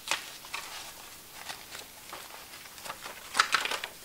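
Quiet handling of paper planner inserts: scattered soft rustles and clicks, with a short cluster of louder rustling a little over three seconds in.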